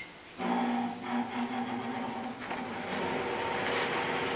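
A machine switches on about half a second in and runs on with a steady hum made of several fixed pitches.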